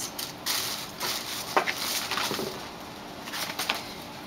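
Paper envelopes being rustled and shuffled by hand, in irregular crinkling bursts with a sharp click about one and a half seconds in.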